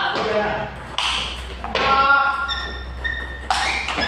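Table tennis ball being struck with paddles and bouncing on the table during a rally, sharp pings and taps ringing in a large hall, with men's voices over them.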